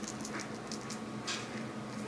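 A cat's paws and claws tapping lightly on a hardwood floor as it walks: a few faint, scattered ticks.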